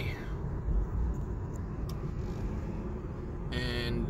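Steady low rumble of a car's engine and tyres heard from inside the cabin while driving.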